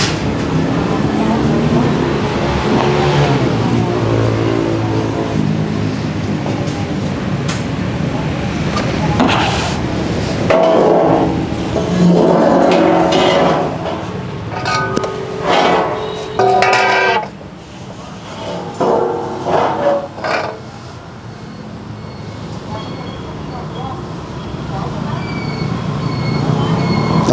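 Indistinct voices talking, with a steady-pitched hum under them during the first several seconds.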